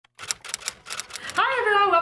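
Intro title sound effect: a quick, uneven run of about ten sharp clicks lasting a little over a second, then a woman's voice begins about one and a half seconds in.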